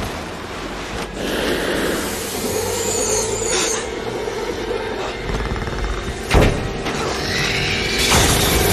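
Film action soundtrack: dramatic score mixed with sound effects, with a smaller hit about a second in and a loud hit about six seconds in.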